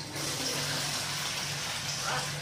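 Steady rush of running water, starting just after the sound begins and holding evenly.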